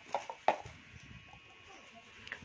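A few light clicks and crinkles from handling a small bubble-wrapped flower pot, the loudest about half a second in, then only faint handling noise.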